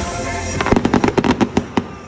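Aerial fireworks going off in a rapid string of about a dozen sharp bangs, roughly ten a second, ending suddenly near the end.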